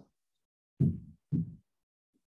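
Two short, deep thuds about half a second apart, each dying away quickly, like a paired beat.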